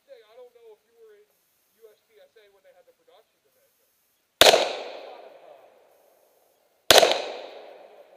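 Two pistol shots about two and a half seconds apart, each a sharp crack followed by an echo that dies away over about a second.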